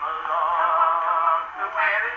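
Early acoustic recording of a comic song on an Edison Diamond Disc, playing through a Victor III gramophone's horn: male singing with band accompaniment, thin in tone with no deep bass. A long note with vibrato is held for about a second and a half, then the tune moves on.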